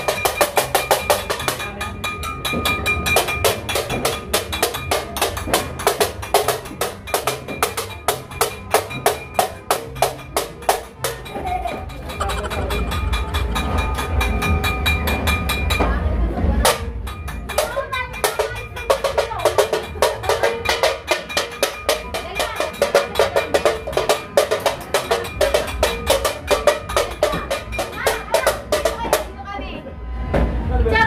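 A stainless steel cooking pot beaten rapidly with a utensil, about five or six clanging, ringing strikes a second, with a short break about halfway through.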